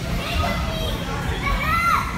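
Several players' voices calling out on a wheelchair basketball court, with one high call that rises and falls near the end.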